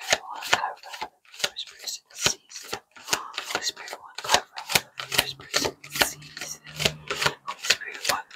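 A deck of tarot cards shuffled by hand, the cards slapping against each other in quick, irregular clicks, about four a second.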